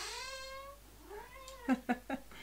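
Domestic cat meowing: a long meow that trails off, then a shorter meow about a second in that rises and falls in pitch.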